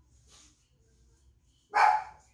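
A dog barks once, a short loud bark near the end, against an otherwise quiet room.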